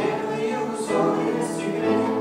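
Live music: a slow melody sung in long held notes, accompanied by acoustic guitar and grand piano.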